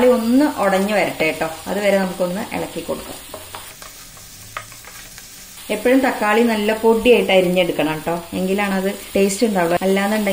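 Wooden spatula stirring and scraping chopped onion and tomato around a non-stick frying pan, over the sizzle of the vegetables frying in butter. The stirring eases off for about two seconds in the middle, leaving only the sizzle, then starts again.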